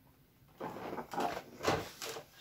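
Cardboard advent calendar being handled as a door is pried open: rustling and scraping of card, with a sharper knock near the end.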